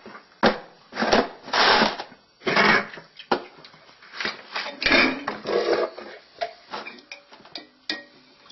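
Irregular scrapes and knocks of PVC pipe, a plastic fitting and cans being handled and set down on a worktop, with a few sharp clicks among longer scraping strokes.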